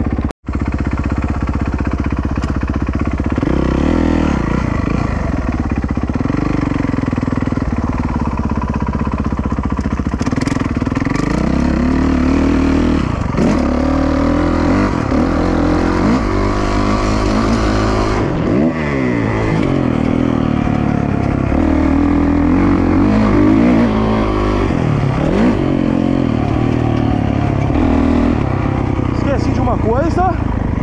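Motocross bike engine being ridden, its revs rising and falling over and over. The sound breaks off briefly just after the start.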